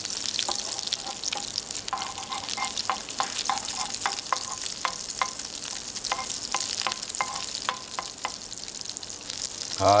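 Hamburg steak patties sizzling in olive oil in a frying pan, a steady hiss with frequent small crackling pops from the oil.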